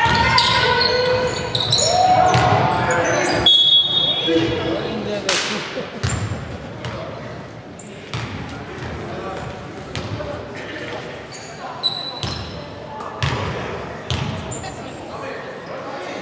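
Basketball play echoing in a sports hall: players' shouts, a ball bouncing on the wooden court, and short high sneaker squeaks. The voices are loudest in the first few seconds, and the play is quieter after that.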